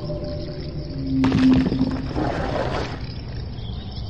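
Eerie Halloween sound-effects soundtrack: a low rumbling drone throughout, with a held tone about a second in and a rushing noisy swell lasting about two seconds.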